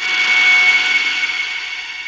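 Haken Continuum Fingerboard played with a finger pressed fully down into its surface: a synthesized note at maximum pressure that starts suddenly at full strength, holds a steady pitch with many bright overtones, and slowly fades.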